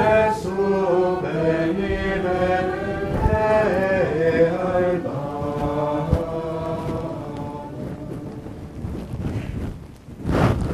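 Slow sung chant: voices hold and move between long notes, then fade away over the second half. A couple of soft knocks are heard about three and six seconds in.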